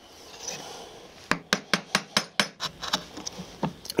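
A bench chisel cleaning dovetail waste in walnut: a soft scrape of the edge in the wood, then a quick, uneven run of about a dozen sharp clicks as it is worked down toward the baseline.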